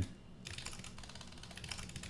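Typing on a computer keyboard: an irregular run of key clicks as a terminal command is entered.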